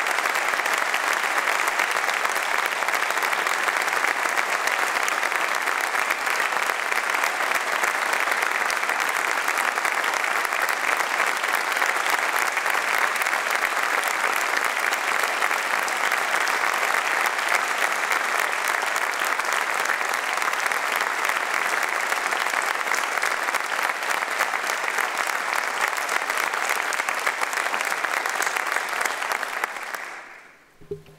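A large seated audience applauding steadily, dying away near the end.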